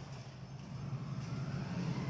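A steady low motor rumble with a hiss over it.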